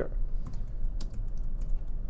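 Typing on a computer keyboard: a run of irregular key clicks over a low steady hum.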